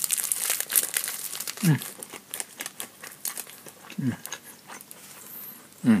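Plastic onigiri wrapper crinkling as it is held and bitten into, dense crackling for the first two seconds, then scattered crackles.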